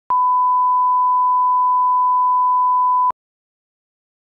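Steady 1 kHz line-up reference tone that accompanies colour bars at the head of a broadcast tape, a single pure pitch held for about three seconds and cut off sharply.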